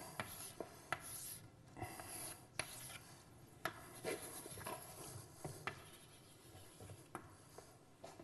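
Chalk drawing lines on a blackboard: faint scratchy strokes, broken by several sharp taps as the chalk strikes the board.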